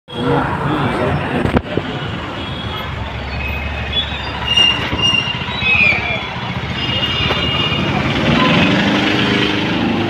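Busy city street noise: motorbike and other traffic running, with people talking and a few short high tones. There is one sharp knock about one and a half seconds in.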